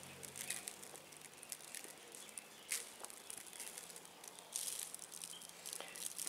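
Salt sprinkled by hand onto raw shad fillets on a wire grill, the grains pattering faintly in a few short, hissy bursts.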